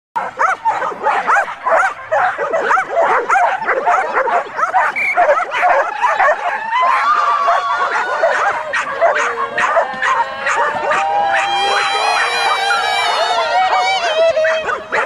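Several excited flyball dogs barking and yipping rapidly, many barks a second, held back by their handlers at the start line. From about halfway through, the barking gives way to long, high-pitched whining and squealing cries.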